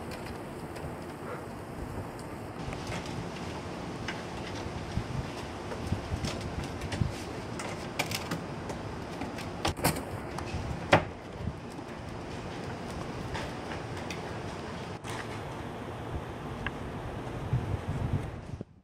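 Scattered light knocks and scrapes from a raccoon clawing at the lids of plastic wheeled garbage carts, the loudest about ten to eleven seconds in, over a steady outdoor hiss.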